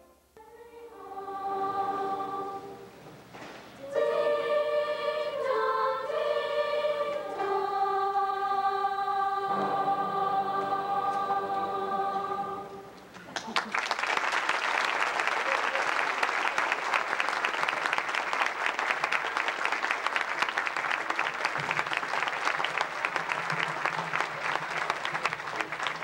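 A school choir singing slow, held chords that change a few times and end on one long sustained chord. About halfway through, the audience breaks into applause that carries on to the end.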